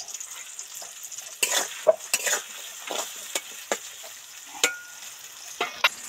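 Sliced onions sizzling in hot oil in a metal kadai while a spatula stirs them, scraping and knocking against the pan at irregular moments.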